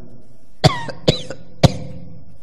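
A man coughing three short times into a handheld microphone, about half a second apart, the last cough the loudest.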